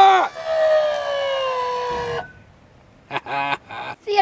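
RV hydraulic leveling-jack pump whining as the rear jacks ground and take the weight, its pitch sinking slowly under the load, then cutting off about two seconds in. A few short clicks follow.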